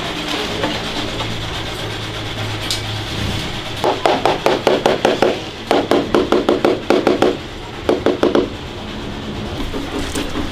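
Rapid light tapping on ceramic tile during tile setting, about six or seven knocks a second, in three runs starting about four seconds in, over a steady background hum.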